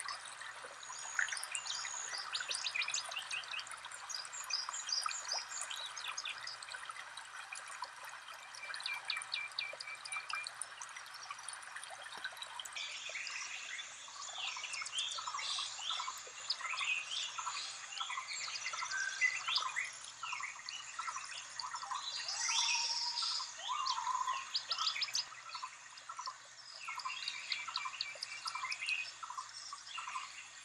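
Several songbirds chirping and trilling in conifer forest over a steady rush of running water. About halfway through the sound changes abruptly, and a lower note starts repeating at an even pace under the higher chirps.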